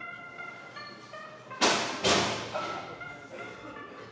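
Two heavy dumbbell thuds about half a second apart, the second a little weaker, over background music with held notes.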